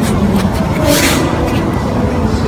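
Gi fabric rustling and bodies shifting on foam mats during grappling, over steady low background noise, with a brief louder rustle about a second in.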